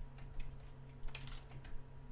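Computer keyboard being typed in an irregular run, a few key clicks a second, over a low steady hum.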